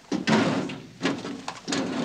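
Office chair scraping and creaking as a man sits down at a desk, with a second scrape near the end.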